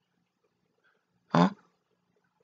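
A woman's single short spoken 'huh?' about a second and a half in. Otherwise near silence, with only a faint steady low hum.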